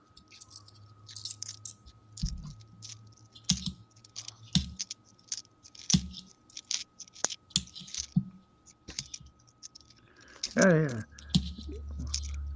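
Canadian nickels being handled and sorted by hand: irregular light clicks and scrapes of the coins against one another.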